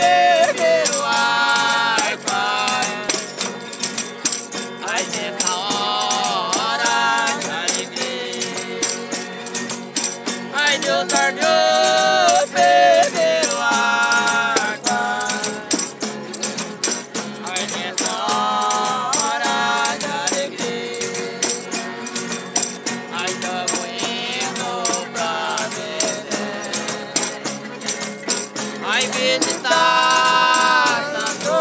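A Folia de Reis group sings in phrases to accordion and acoustic guitar, over a steady rattling percussion beat.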